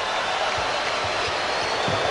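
Arena crowd cheering, a steady wash of crowd noise after a home-team basket.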